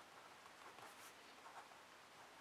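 Faint scratching of a pen writing on notebook paper, in short uneven strokes.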